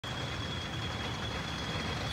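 Steady low background rumble with a faint, constant high-pitched whine over it.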